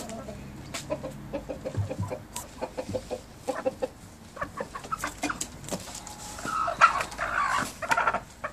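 Chickens clucking in short, repeated notes, then near the end a loud, harsh squawk lasting over a second as the rooster mounts the hen.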